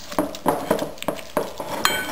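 A spatula chopping and mashing through softened cream cheese and mix-ins in a glass mixing bowl, knocking against the bowl about five or six times in irregular strokes.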